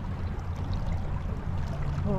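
Water splashing and trickling along the hull of a pedal-drive fishing kayak moving under way, over a low steady rumble.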